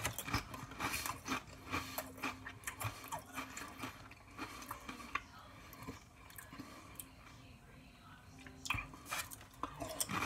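A mouthful of thick kettle-cooked potato chips being chewed: a quick run of crisp crunches that thins out past the middle, with a few more crackles near the end.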